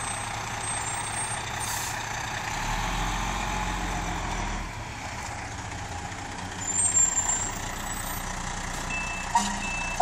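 A fire truck's diesel engine runs steadily as the rig manoeuvres, with a short loud burst about seven seconds in. Near the end its reversing alarm starts beeping at an even pace as the truck begins to back into its station.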